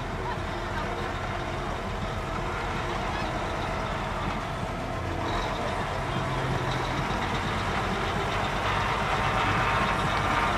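Diesel engine of a Mack truck idling along at low speed as it pulls a loaded flatbed trailer past, growing louder over the last few seconds as it nears. Voices of people riding the trailer mix in.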